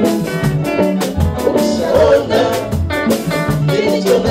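Church choir singers on microphones singing a Swahili gospel song over band accompaniment with a steady beat and bass line.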